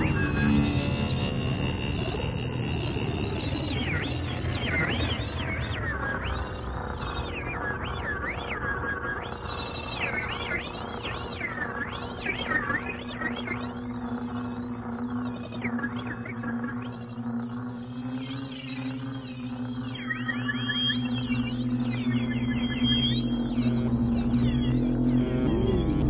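Electronic music made from audio feedback (the Larsen effect) and its modulations: high, wavering squeals that loop up and down in pitch over steady held tones. A low rumble fades out in the first few seconds, and a steady low drone takes over in the second half.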